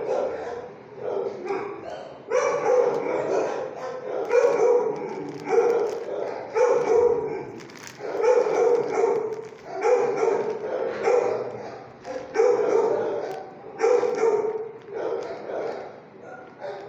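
Dog barking repeatedly, a dozen or so barks at roughly one-second intervals.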